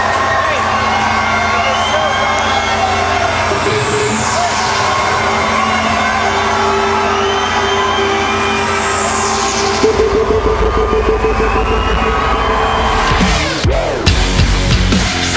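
Arena rock concert sound: held droning music with a high falling sweep every few seconds over a cheering crowd, then a heavy pulsing low beat comes in about ten seconds in.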